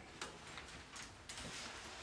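A few faint, irregularly spaced clicks over quiet room tone.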